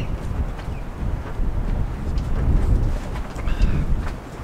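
Wind buffeting the microphone on an open boat deck: a steady, fluttering low rumble.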